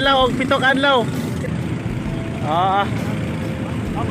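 Steady low rumble of a passenger boat under way, with voices over it, loudest in the first second.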